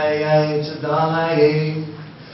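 A man chanting a devotional prayer in long held notes: two phrases, with a short break just before a second in.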